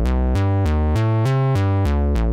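Sequenced synthesizer notes played through a DIY Buchla-style resonant low-pass gate, a Eurorack module. The notes come about three to four a second on a changing bass line, and each one starts bright and quickly darkens as the gate closes.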